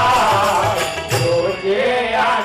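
Devotional Gujarati Shiva bhajan: a man sings the melody, accompanied by tabla strokes and the steady clink of small brass hand cymbals.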